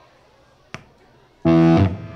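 Low crowd chatter, a single sharp click, then about one and a half seconds in a loud electric guitar chord struck through the amplifier, held for about half a second and cut off.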